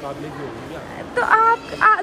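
A high-pitched voice speaking or exclaiming from about a second in, after a faint low murmur of voices.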